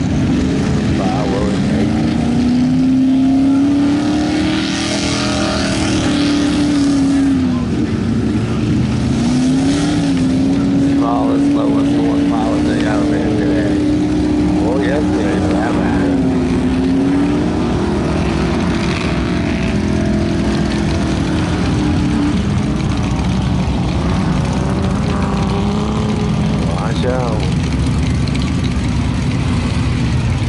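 Suzuki Samurai's small engine working under load as it pushes through deep mud, its pitch rising, dipping briefly a few times with the throttle and holding steady between. The engine eases off in the last several seconds as the Samurai comes out onto firm ground, with people's voices in the background.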